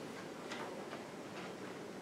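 Faint, irregularly spaced ticks and light paper sounds as the pages of a paperback poetry book are leafed through.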